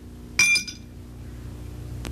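Sword blades striking once: a single sharp metallic clink about half a second in, ringing briefly at several high pitches, over a low steady hum.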